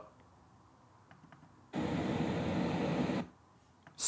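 A faint click or two, then a burst of steady, even rushing noise lasting about a second and a half, stopping abruptly.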